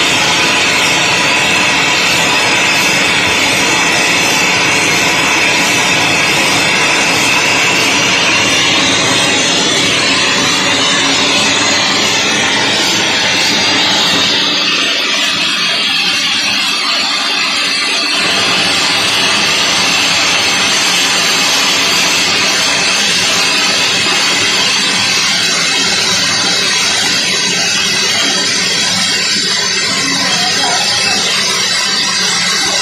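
Steam generator's bottom blowdown valve wide open, blasting steam and boiler water out in a loud, steady hiss: the boiler being blown down to flush out sludge and scale.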